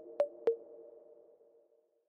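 Short electronic logo sting: a few quick pinging notes in the first half second, then ringing out and fading away.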